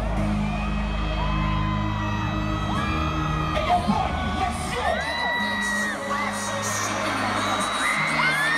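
Live music with deep, steady bass booming through an arena PA, with the crowd whooping and screaming over it.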